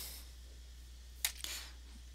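Two single computer keyboard keystrokes, a quarter of a second apart, a little over a second in, over a steady low hum.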